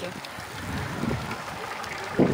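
Steady wind noise on an outdoor microphone, a soft, even rush with no distinct events.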